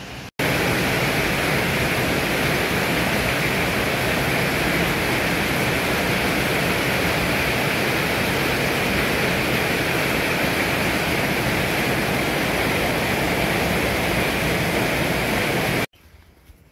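Heavy rain pouring down onto a street: a loud, steady, even hiss of rainfall. It starts abruptly just after the beginning and cuts off abruptly near the end.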